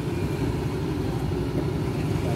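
Steady low rumble of a motorcycle engine idling close by.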